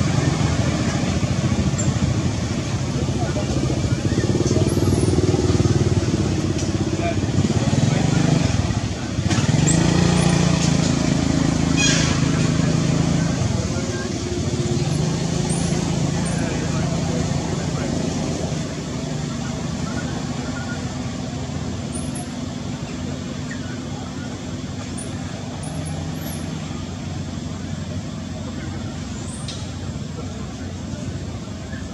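A motor vehicle engine running nearby, its pitch rising and falling slowly a few times, then growing quieter over the second half.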